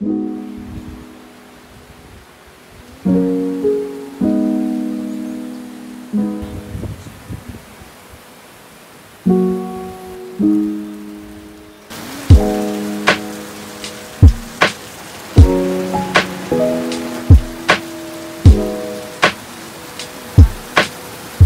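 Background music: soft, sparse piano notes, joined about twelve seconds in by a steady hiss of rain and a sharp, regular beat.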